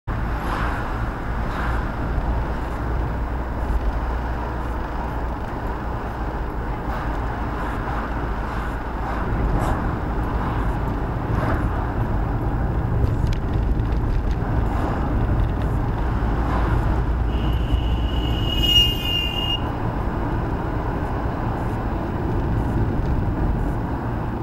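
Steady low rumble of a car being driven, engine and tyre noise heard from inside the cabin through a dashcam microphone. A brief high-pitched tone sounds about three-quarters of the way through.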